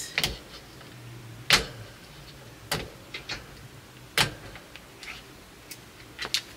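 Small plastic rechargeable motion-sensor LED light being handled and pressed up against the underside of a shelf: about half a dozen sharp clicks and taps, spaced roughly a second apart.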